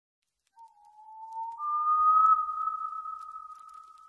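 Two long, pure electronic tones in the intro of a rap track: a lower one starts about half a second in, a higher one joins about a second later, and both hold with a slight upward slide before fading toward the end.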